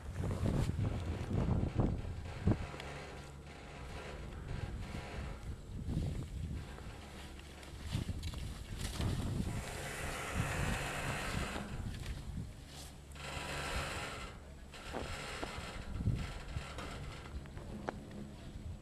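Wind buffeting the microphone of a camera skiing down a slope, with skis hissing and scraping over snow in swells through the middle.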